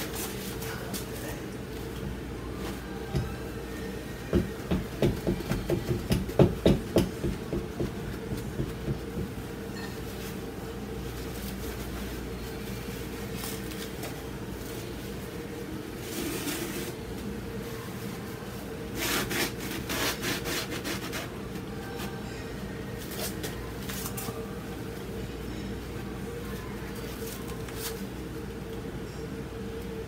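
A rag rubbing over a heavily textured acrylic painting on canvas, wiping away wet paint strips. There is a run of rubbing strokes, about two a second, for several seconds, then shorter scratchy bursts later, over a steady low hum.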